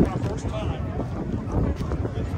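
Wind buffeting the phone microphone, a steady low rumble, with faint voices of a crowd in the background.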